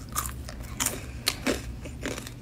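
Chewing and biting a crispy fried chicken wing: a series of short, sharp crunches, about five or six in two seconds.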